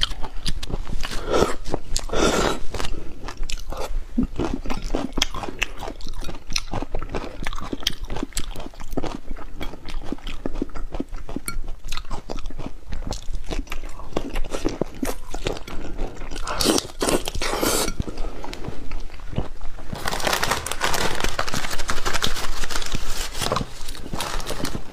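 Close-miked eating of a raw prawn with chili-garlic topping: wet chewing, smacking and crunchy bites in quick clicks, with a few longer slurps, the loudest and longest near the end.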